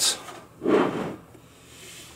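Brief handling noise: a single rub lasting about half a second, starting about half a second in and fading away.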